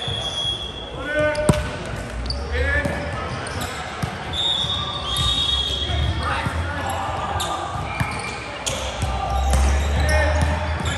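A volleyball rally on an indoor hardwood court: sharp smacks of the ball being hit several times, sneakers squeaking on the floor in short high squeals, and players shouting calls, all with the echo of a large hall.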